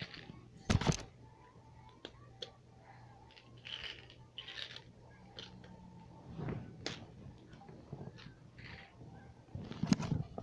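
Handling of a small plastic jelly bean package: a sharp knock about a second in, then scattered clicks and a few short rattles as a jelly bean is got out of it.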